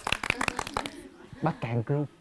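Hand clapping: a rapid run of sharp claps from a few people that stops about a second in.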